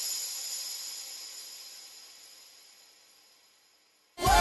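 The end of a pop-rock song: its last sound rings out with a few high sustained tones and fades away to silence over about three seconds.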